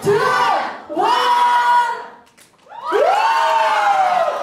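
Crowd cheering and shouting in loud surges, with long drawn-out yells. It drops away briefly a little past halfway, then swells up again, greeting the judges' verdict.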